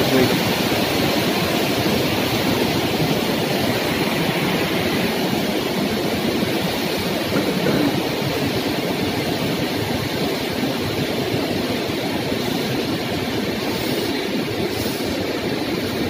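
Fast-flowing mountain river rushing over boulders: a steady, even rushing noise that holds at one level throughout.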